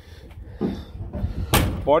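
Steel door of a 1964 Plymouth Belvedere swung shut by hand, closing with one slam about one and a half seconds in.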